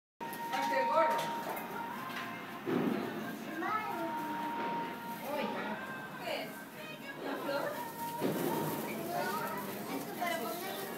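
Several indistinct voices, children's among them, talking and calling out over one another, with music in the background.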